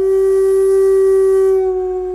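Solo shakuhachi, the Japanese end-blown bamboo flute, holding one long, steady note. It has an airy breath tone that thins out near the end.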